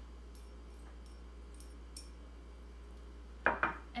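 Small kitchenware clinking faintly a few times over a steady low hum, then a couple of louder knocks near the end as a small dish is set down on the countertop.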